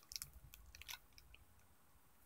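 Faint crinkling and a few light clicks of small items being handled in about the first second, then near silence.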